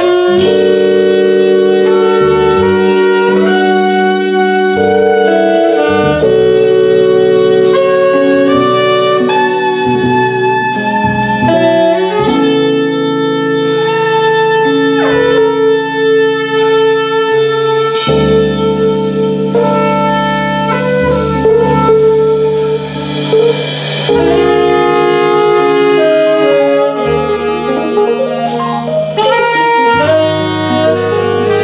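Live jazz quintet playing: saxophone and trumpet sound a melody together in held notes over upright bass, drum kit with cymbals, and Fender Rhodes electric piano.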